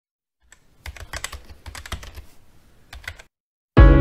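Quick, irregular keyboard typing clicks for about two and a half seconds. Near the end, music with a deep low note starts suddenly and much louder.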